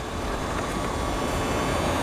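A steady mechanical rushing noise, swelling slightly louder.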